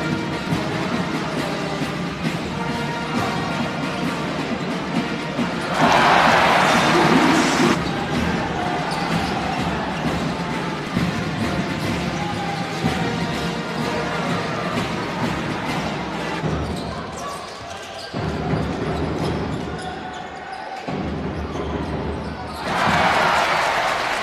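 Basketball game sound in an arena: the ball bouncing on the hardwood court over a steady crowd background, with two loud swells of crowd noise, about six seconds in and again near the end.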